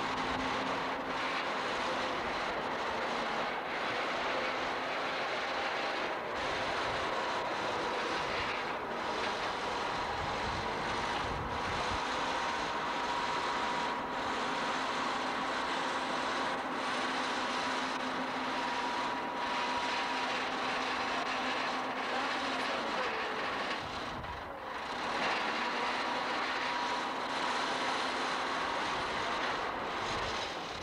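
Case 850B crawler dozer's diesel engine running steadily as the machine works a dirt pile, with a steady tone riding over the engine noise. It goes briefly quieter about 24 seconds in.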